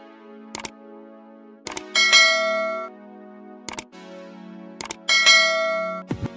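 Sound effects of an animated subscribe button: mouse clicks followed by a bright bell chime, in two rounds of click, click, ding.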